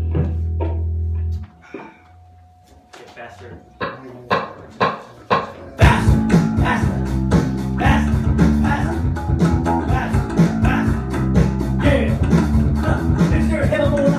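A held low bass note cuts off about a second and a half in, followed by a few seconds of scattered taps that grow louder. At about six seconds a band rehearsal comes in at full volume, with drums, bass guitar and guitar, and a man singing into a microphone over it.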